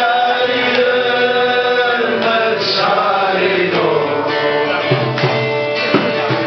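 Live music: a man singing in long, held, wavering phrases to the accompaniment of a plucked string instrument.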